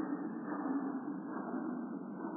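Slowed-down, muffled audio of a slow-motion replay: a low, dull rumble with no distinct events, growing slightly duller as it goes.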